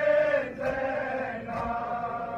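Crowd of male mourners chanting a Balti noha in unison, with long held notes. Faint thumps of chest-beating (matam) fall about once a second under the chant.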